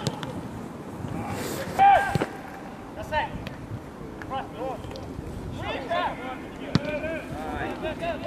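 Footballers calling and shouting to each other across the pitch, with sharp thuds of the ball being kicked about two seconds in and again near the end.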